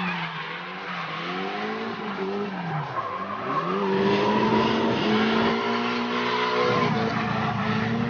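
Electric motors of 1/10-scale rear-wheel-drive RC drift cars whining as they drift in tandem, the pitch dropping about three seconds in and climbing again with the throttle, over the hiss of their hard tyres sliding across the asphalt.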